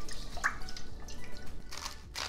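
Wire whisk beating a thin mayonnaise and citrus-juice dressing in a stainless steel bowl: a quick, irregular run of wet, splashy strokes.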